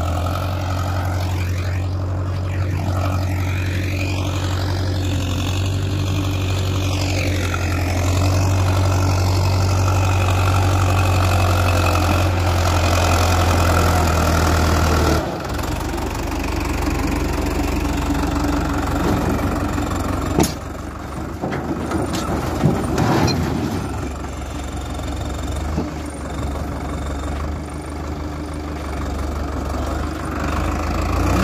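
Diesel farm tractor engine running steadily. About halfway the sound changes abruptly to a rougher, noisier engine sound as the tractor's rear blade scrapes through loose soil, with a sharp knock a few seconds later.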